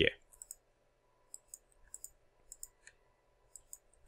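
Computer mouse clicking: scattered short, sharp clicks, several in quick pairs, as objects are selected and moved in a design program.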